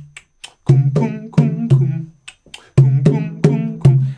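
Congas (tumbadoras) played by hand in the guaguancó conga melody: ringing open tones mixed with sharp slaps in an uneven, syncopated pattern, about eight strokes.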